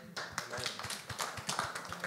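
Light, scattered hand clapping from a few people in the audience, irregular claps several times a second.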